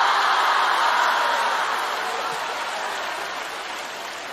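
Theatre audience laughing and applauding, loudest at first and slowly dying away.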